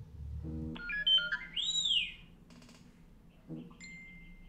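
A mobile phone's alert tone: a quick run of short electronic notes, then a high tone that swoops up and back down about two seconds in.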